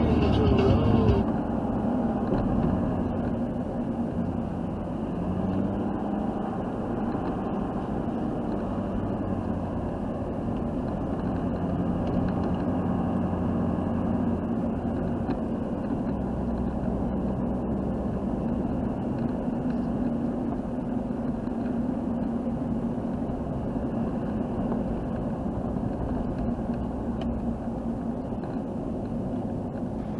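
Ford F-250 diesel pickup driving steadily on snow, heard from inside the cab as an even engine hum and road noise. Music cuts off about a second in.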